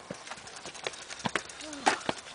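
Irregular clicks and knocks of footsteps and mountain bikes being pushed over a stony dirt path, with a short voice sound near the end.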